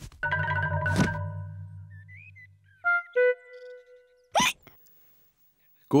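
Cartoon music cue: a buzzing, pulsing held chord for about two and a half seconds while a cartoon piglet spins round, then a second held note. Near the end comes a short, sharp hiccup: the hiccups have not been cured.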